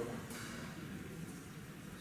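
Quiet room tone in a pause between spoken words, with a soft brief breath-like noise about a third of a second in.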